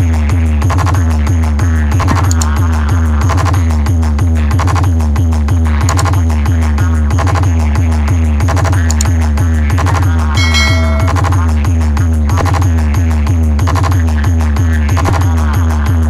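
Loud electronic dance music with very heavy bass and a steady, even beat, played through a towering DJ speaker stack.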